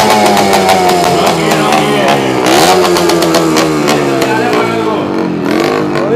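Motorcycle engine being revved: its pitch climbs sharply and then sinks slowly, twice over, with a third rise near the end as the bike moves off.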